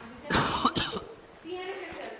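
A person coughing twice in quick succession, loud and harsh, about half a second in, among ongoing speech.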